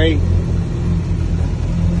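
Mitsubishi 4G63 turbocharged four-cylinder engine idling with a steady low rumble, heard from inside the car.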